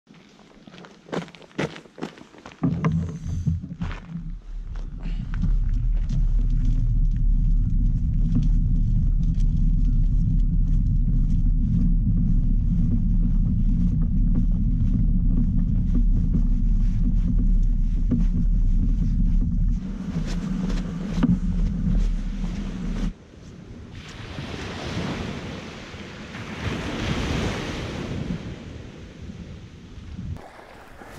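A few knocks and clatters, then a loud, steady low rumble for about twenty seconds that stops suddenly. After it, waves wash on a sandy beach, swelling and fading.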